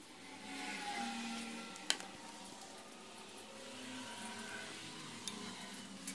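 A steady machine-like whir with faint held tones, broken by a sharp click about two seconds in.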